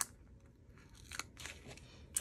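Faint paper crackle and tiny clicks of a small sticker being peeled off its backing sheet with metal tweezers and pressed onto a planner page: one sharp tick right at the start, then a few softer crackles about a second in.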